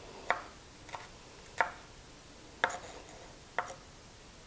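Chef's knife dicing green bell pepper on a bamboo cutting board: five sharp knocks of the blade striking the board, about a second apart.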